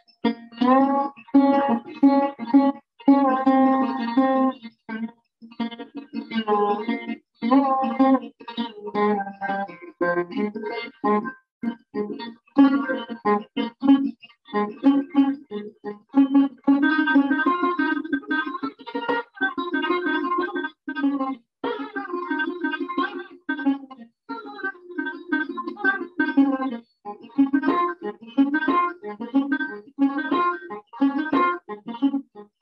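Hindustani fretless plucked lute with a metal fingerboard played solo: quick runs of plucked notes that ring between strokes, with short breaks and notes sliding in pitch along the fingerboard.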